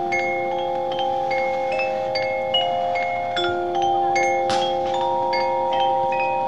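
Marching band playing a quiet passage: a soft held chord that shifts every second or two, under scattered high bell-like notes from mallet percussion.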